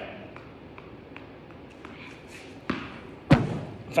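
A tennis ball tapped lightly up off an open palm, faint soft pats a few times, then two louder thuds near the end, the second the loudest.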